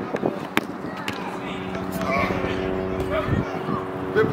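A football kicked once, a sharp thud about half a second in, over a steady droning hum.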